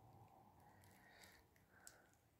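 Near silence: faint room tone, with one small click near the end.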